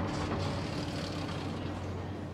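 City traffic noise with a steady low engine drone from a heavy road vehicle such as a bus or truck.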